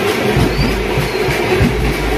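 Procession drums beating with a dense, busy clatter of low thumps several times a second.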